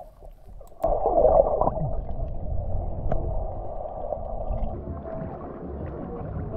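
Muffled water sloshing and gurgling against a camera held under and at the water's surface, starting suddenly about a second in.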